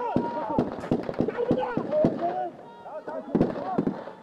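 Several voices shouting over one another amid a rapid, irregular series of sharp bangs, like gunfire or firecrackers. It all dies away near the end.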